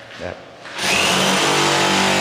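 A power tool starts suddenly about a second in and runs loudly and steadily, with a brief whine rising in pitch as it comes up to speed.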